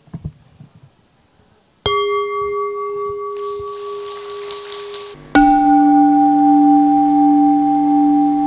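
Two strikes of a bowl-shaped Buddhist bell, each ringing on in a long steady tone. The first comes about two seconds in; the second, about three seconds later, is lower and louder. A soft rushing sound passes between them.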